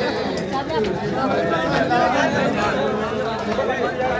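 Crowd of men's voices talking and calling over one another, a steady babble with no single clear voice.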